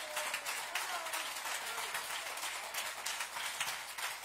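Congregation applauding in a dense patter of clapping, with a few voices calling out among it.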